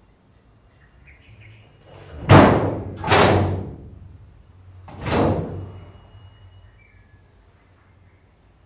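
Three loud slamming bangs, each dying away over about half a second. Two come close together a little over two seconds in, and the third about two seconds later.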